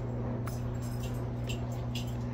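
Steady low electric hum of the Saluspa inflatable hot tub's pump and heater unit running, with a few faint small clicks over it.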